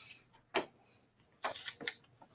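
Short, sharp clicks in a quiet room: a single click about half a second in, then three quick clicks close together near the end.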